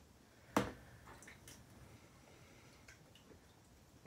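A sharp click about half a second in, then faint squishes and drips from hands rummaging through a container of frozen mice thawing in water.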